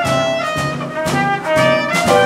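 Small swing band playing live: trumpet and clarinet carrying sustained horn lines over piano, bass and drums, with a steady swing beat about twice a second.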